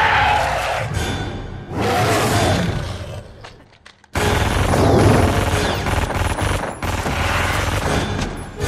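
Film action sound mix: a creature's snarling roar over score in the first seconds, a brief near-quiet, then a sudden volley of rapid close-range pistol shots about four seconds in that run on for about three seconds.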